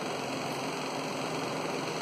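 Steady, even noise of a running wall-mounted fan and portable air cooler, with no other event.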